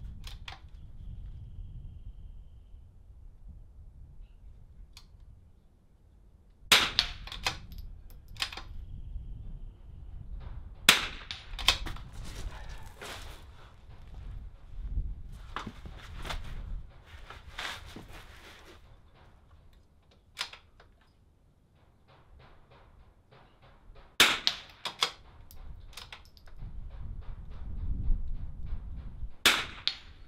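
.22 LR rimfire rifle firing single shots spaced several seconds apart: about four sharp cracks stand out, with lighter clicks and knocks between them as the rifle is handled and reloaded between shots.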